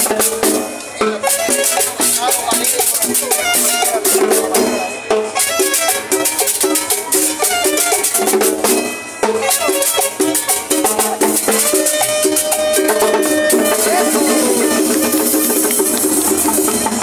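Live band playing upbeat dance music, with drums and shaken percussion keeping a steady beat.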